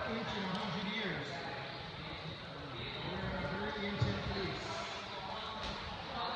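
Indistinct voices of people talking inside a cave, with one sharp thump about four seconds in.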